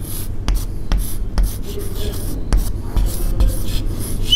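Chalk writing on a blackboard: short scratchy strokes with several sharp taps as the chalk meets the board, over a steady low hum.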